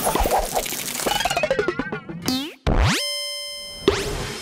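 Cartoon sound effects of an animated pencil rummaging in a toolbox: a quick run of springy boings and clunks, with a rising sweep that leads into a steady electronic buzz held for about a second near the end.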